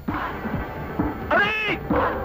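A single meow, about half a second long, its pitch rising and falling, over background film music.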